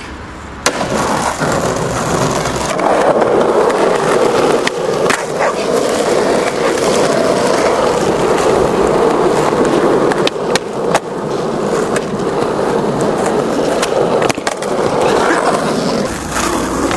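Skateboard wheels rolling over rough asphalt with a steady grinding rumble, broken several times by sharp clacks of the board hitting the ground.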